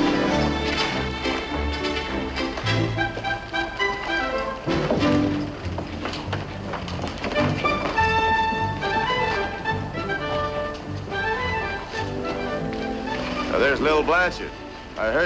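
Background music score with sustained notes that change every second or so, and a man's voice starting right at the end.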